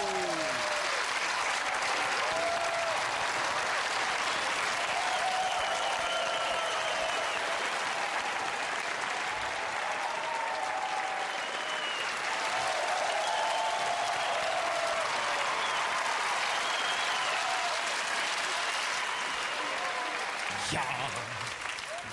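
A studio audience applauding steadily, with scattered shouts and cheers over the clapping. It dies down near the end.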